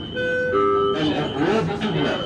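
A two-note falling electronic chime, the signal of the Dubai Tram system, followed about a second in by a voice speaking.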